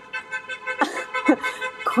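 Car horns honking continuously from a nearby highway, heard as several steady held tones layered over one another.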